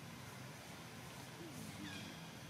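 A macaque's short, high-pitched squeak near the end, over faint steady background noise.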